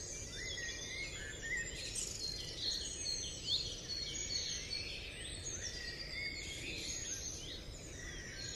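Several songbirds singing and chirping over one another, with short whistled notes that rise and fall, over a steady low background noise.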